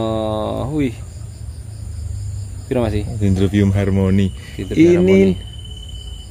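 Steady high-pitched insect chirring, with a man's drawn-out wordless vocal sounds over it: a long one with a falling end in the first second, then several shorter ones from about three seconds in.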